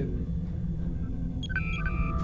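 Sci-fi starship bridge ambience, a steady low rumble, with a short run of electronic beeps at several pitches about one and a half seconds in: the sound effect of a communication channel opening.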